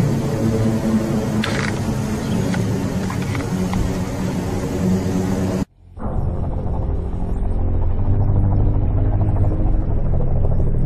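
Steady background music with sustained low tones, cut off abruptly. After a moment of silence it gives way to a deep, steady low-pitched droning hum.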